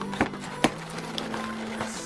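Soft background music with two short taps, about a quarter and two-thirds of a second in, as a cardboard-covered notebook is handled and slid into a planner's inside pocket.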